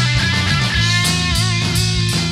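Rock band playing live: electric guitars, bass and drums in an instrumental stretch without singing, with regular drum strikes. Around the middle, one sustained note wavers in pitch.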